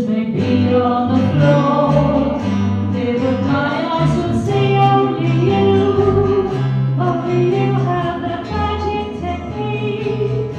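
A small live band: several voices singing together over acoustic guitar and a bass line, playing a song without a break.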